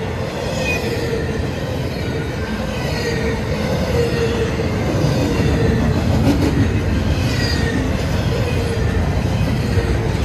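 Double-stack intermodal freight cars rolling past on steel rails: a steady, loud rumble and rattle of wheels on track, with a few brief high wheel squeals.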